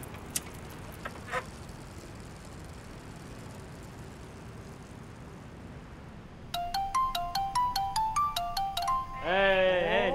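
Low, steady outdoor background noise with a couple of faint clicks. About six and a half seconds in, a quick electronic melody of short beeping notes plays for about two and a half seconds.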